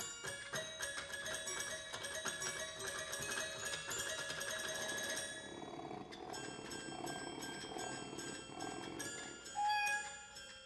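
Children's toy xylophone played with mallets in quick runs of bright, ringing high notes. About halfway through, a toy 'meow' keyboard joins with cat-meow sounds, and a short held note sounds near the end.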